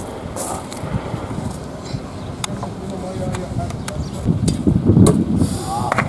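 An arrow strikes a foam archery target with a sharp knock, one of a few clicks heard over a steady outdoor murmur. Voices are heard near the end.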